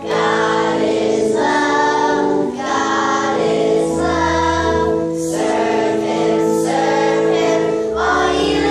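Children's choir singing a religious song, with instrumental accompaniment of held chords and bass notes underneath.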